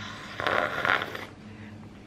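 A person slurping a sip of hot tea from a ceramic mug: one noisy sip of under a second, about half a second in.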